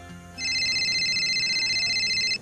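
Electronic telephone ringing: a steady, rapidly warbling trill that starts about half a second in, as the last of the music dies away.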